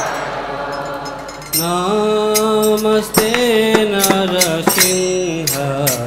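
Temple kirtan: a crowd of voices chanting together, then about one and a half seconds in a single lead voice enters with held notes that step up and down, over a run of sharp percussion strikes.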